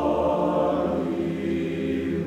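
Men's choir singing unaccompanied, holding sustained chords that shift to a new chord about a second in.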